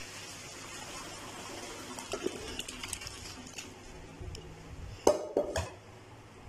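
Par-boiled rice and its hot cooking water being poured into a stainless-steel colander in a sink, the water splashing and draining through, fading as the pour ends. Two loud clanks of metal cookware come near the end.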